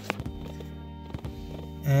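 Background music with long held notes, with a faint click near the start.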